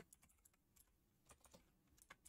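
Faint, irregular computer keyboard key presses, several scattered clicks as a command is typed.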